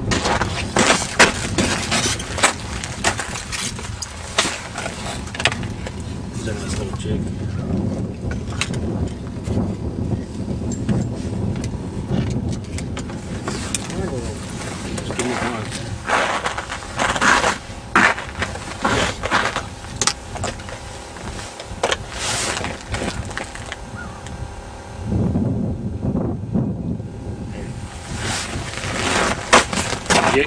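A man talking indistinctly, buried under wind buffeting on the microphone, with frequent sharp gust pops and handling knocks.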